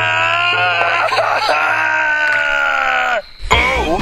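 A cartoon character's voice giving one long, held scream that sags a little in pitch and cuts off about three seconds in, followed by short broken vocal sounds.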